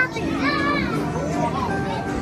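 Busy arcade-room din: children's voices and chatter over the steady electronic tones and music of arcade game machines, with one child's high-pitched voice rising above the mix about half a second in.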